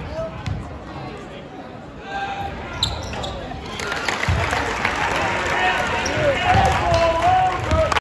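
A basketball bouncing on a gym's hardwood floor during a free throw. From about four seconds in, the spectators' voices swell into cheering and shouting.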